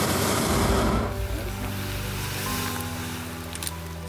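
Hot-air balloon propane burner firing, a loud rushing blast that cuts off about a second in, over background music.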